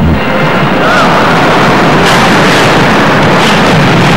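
Figure skate blades scraping and carving across the ice, a loud steady hiss with a couple of sharper scrapes about halfway through and near the end.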